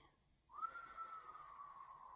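A man whistling one long, soft, steady note that sags slightly in pitch, starting about half a second in.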